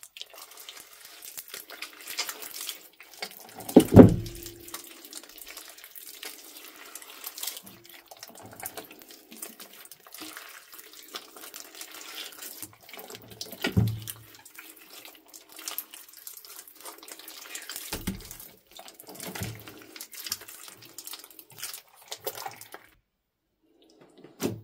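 Wet, sticky green slime squeezed and kneaded by hand, squelching and crackling continuously as air pockets and stringy strands pull apart, with a few louder deep squelches about 4, 14 and 18 seconds in.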